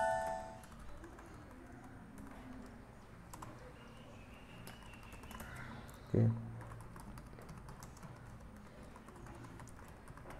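Faint, scattered clicks of typing on a computer keyboard, with a short electronic chime dying away at the very start.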